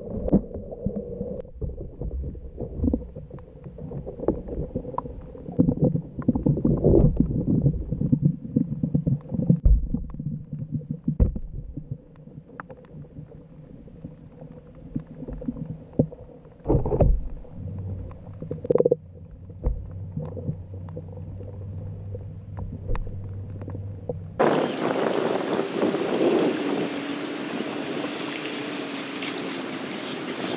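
Muffled underwater sound picked up by a GoPro in a submerged bottle fish trap: low rumbling with irregular knocks and bumps. About 24 seconds in it cuts to open air, with wind on the microphone and moving water.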